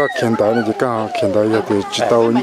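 A man talking in a continuous run of speech.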